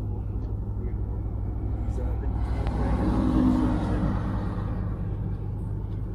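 Car engine idling, heard from inside the cabin as a steady low hum. In the middle a rush of passing traffic swells and fades.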